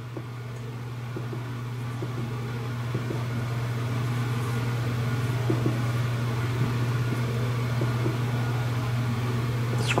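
Steady low hum that grows gradually louder, with a few faint clicks of buttons being pressed on a misting controller's keypad.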